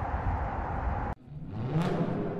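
A steady rumbling noise stops abruptly about a second in. Then a rising tone swells into a sharp, bright hit near the end: the start of a logo sting.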